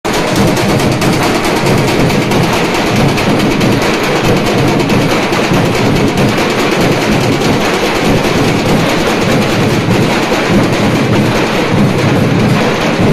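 A troupe of large Maharashtrian dhol drums beaten together with sticks in a fast, unbroken, loud rhythm.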